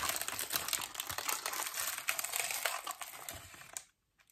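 Crinkling of an already-opened Pocky wrapper as she reaches in and pulls out a stick, the crackling dying away near the end.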